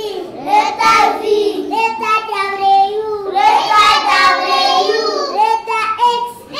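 Young children singing a song in high voices, with long held notes.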